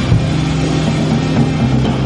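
A car engine running at a steady speed on a four-wheel-drive chassis dynamometer, with background music playing over it.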